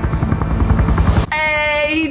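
A deep, rapidly pulsing rumble from the show's soundtrack that cuts off abruptly about a second and a quarter in. A person's long, high-pitched vocal exclamation follows.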